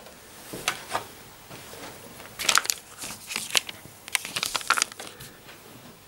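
Rustling and crinkling of a sheet of paper being handled on a table, in several short bursts with a few light clicks.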